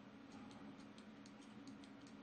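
Near silence: faint, irregular clicks of a computer mouse, several a second, over a low steady hum.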